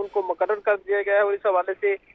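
Speech only: a man talking in Urdu over a telephone line, his voice thin and cut off at the top.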